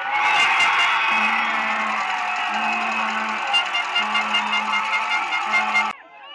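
A sudden burst of loud cheering and screaming from the stands as a goal goes in, with a low steady tone, like a horn, sounding on and off four times underneath, cut off abruptly near the end.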